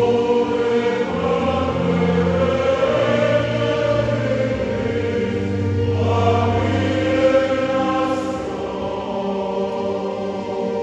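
A church choir singing a slow hymn in long held chords.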